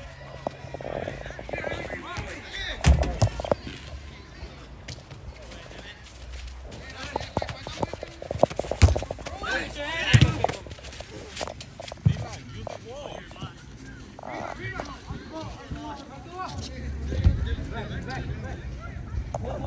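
A football being struck on an outdoor artificial-turf pitch: a handful of sharp thuds a few seconds apart, from kicks and the ball hitting the boards. Players shout and call out in the middle and near the end.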